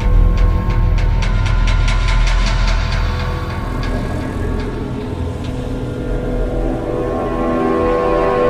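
Dark cinematic logo-intro music over a heavy low rumble. A run of sharp ticks speeds up through the first half and thins out after about four seconds. Sustained chords swell near the end.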